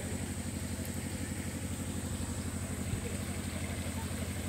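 A combustion engine running steadily at a constant speed, with a rapid, even low throb.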